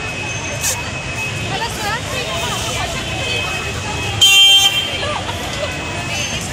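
A horn toots once, loud and about half a second long, about four seconds in, over people chatting in a busy mall; it is most likely the horn of the electric ride-on 'London Bus' kids' ride.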